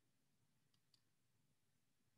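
Near silence, with two faint clicks about a second in.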